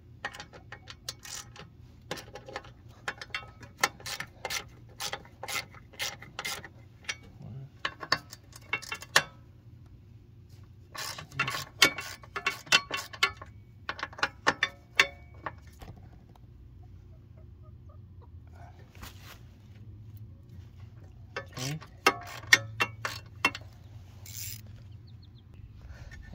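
Socket ratchet clicking in quick runs as it backs out the 10 mm bolts holding a mower deck's belt-guard bracket, with short pauses between runs.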